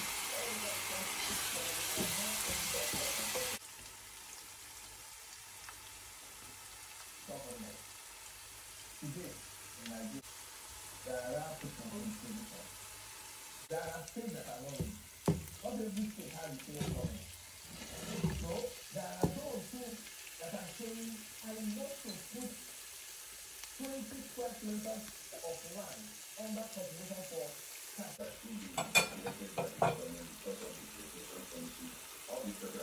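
Egusi (ground melon seed paste) frying in hot palm oil: a steady sizzle for the first three and a half seconds that cuts off abruptly, then quieter stirring of the frying paste with a wooden spoon.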